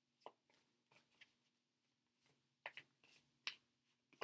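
A deck of tarot cards being shuffled in the hands: about eight quiet, short slaps and flicks of the cards at uneven intervals.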